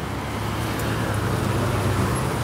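Low, steady engine hum of a motor vehicle over outdoor background noise, growing slightly louder.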